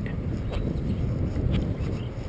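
Wind buffeting the microphone in a steady low rumble, with a few faint clicks.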